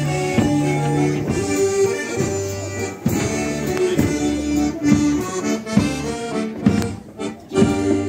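Folk band's accordion playing a lively dance tune in held chords, with a drum striking about once a second. The music grows quieter near the end.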